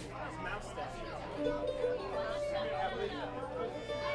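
Audience chatter between songs, with a string instrument being tuned: a few steady held notes starting about one and a half seconds in.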